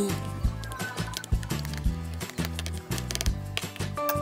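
Background music: a bass line moving in short steps under a regular beat.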